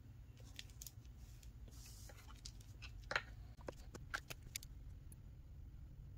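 Faint scattered clicks and taps of small objects being handled on a tabletop, with a short soft rustle about two seconds in and the sharpest click about three seconds in.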